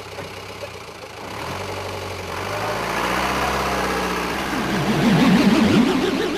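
Bus engine running and growing louder from about two seconds in as the bus pulls away, with a louder wavering pitched sound near the end.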